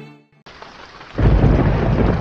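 Violin music fades out, and about half a second in a rushing noise like rain begins, with a loud, deep, thunder-like rumble coming in about a second in.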